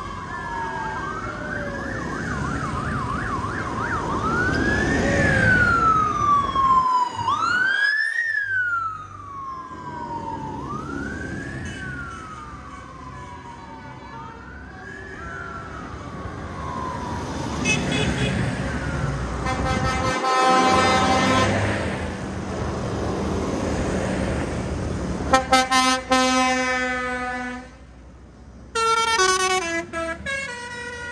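A siren wailing, rising quickly and falling slowly about every two seconds, over the rumble of passing tractor engines. In the second half horns sound several times, and near the end one horn steps through several notes.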